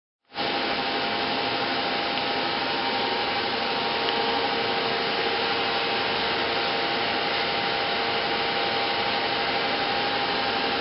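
Steady machine whir: a constant rushing noise with a faint steady hum tone in it, unchanging throughout.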